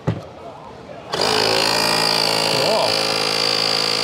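A click, then about a second in the electric air compressor of a Slime flat tire repair kit switches on and runs steadily with a high whine, set to air only rather than pumping sealant.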